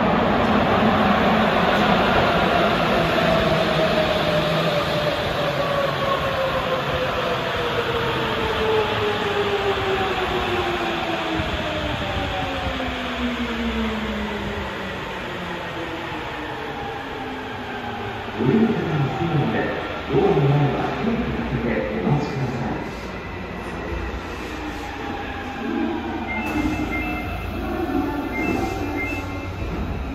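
Rubber-tyred Sapporo Municipal Subway Tozai Line train pulling into the platform and braking, its inverter motor whine falling steadily in pitch over about fifteen seconds as it slows. A few louder bursts follow as it comes to a stop, then a repeated high beeping as the doors open near the end.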